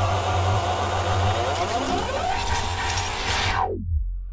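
Bass-boosted hardstyle build-up: a dense synth chord over heavy bass, with rising sweeps, then near the end the whole sound plunges down in pitch and the highs fall away, ahead of the drop.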